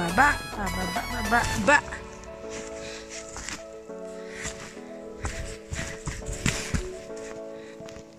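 Background music: a wavering melody line for about the first two seconds, then sustained chords, with scattered short rustling noises underneath.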